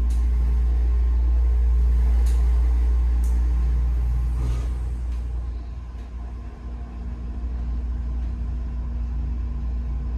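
Schindler 330A hydraulic elevator's pump motor running with a deep, steady hum while the glass car travels, with a few light clicks. It grows quieter about halfway through.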